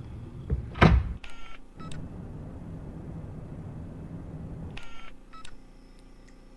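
Glitchy analog-video soundtrack: a heavy thud about a second in, then a low static rumble broken by two short bursts of electronic beeping. Near the end it drops to a faint steady high whine.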